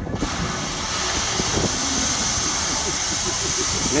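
A geyser erupting: a loud rushing hiss of steam and water starts suddenly just after the start and holds steady, with people's voices faintly underneath.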